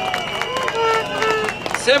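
Background of an outdoor crowd during a pause in an amplified speech: scattered voices and small clicks over a steady high-pitched tone, before the man speaking at the microphone resumes near the end.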